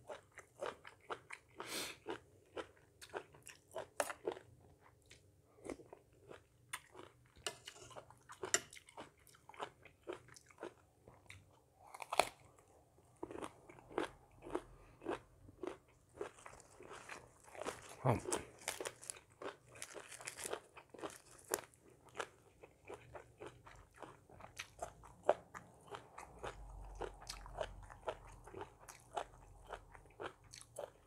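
Close-miked chewing and crunching as a person eats a spicy Thai salmon salad with raw lettuce and cucumber: irregular wet crunches and mouth clicks, with a louder bite or swallow about halfway through.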